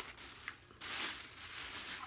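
Plastic shopping bag rustling as items are handled, a steady crinkling hiss that starts about a second in after a few faint clicks.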